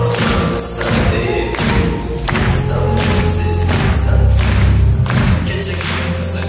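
Live pop band music with heavy bass and a steady drum beat, recorded from the audience in a concert hall.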